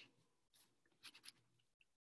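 Near silence over a video call, broken by a few faint, brief noises about a second in.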